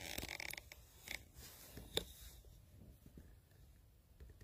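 Faint rustling of a padded jacket for about half a second, then two sharp clicks, about one and two seconds in, over a faint low background rumble.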